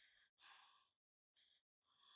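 Near silence with a few faint breathy puffs, each under half a second, separated by stretches of dead silence.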